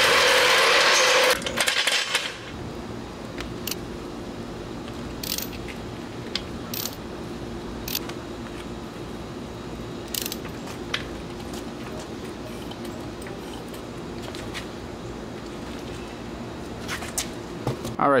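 Floor jack and wheel wrench at work as a car wheel is taken off: scattered sharp metallic clicks and clanks over a steady low hum, after a loud burst of rushing noise in the first second and a half.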